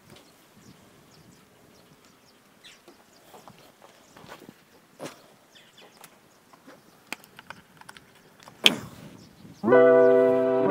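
Faint rustles and clicks of a coiled rubber extension cable being set down on brick paving, with light footsteps, and one sharp knock near the end. Electric piano music starts just before the end.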